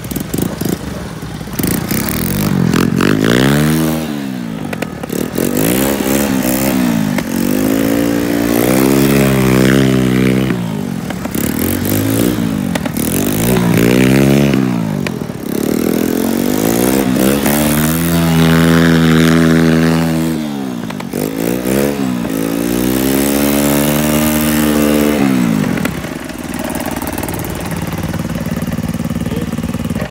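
Engines of Honda ATC three-wheelers revving up and easing off again and again, about eight rises in pitch, as they ride on snow. Near the end they settle to a lower, steadier run.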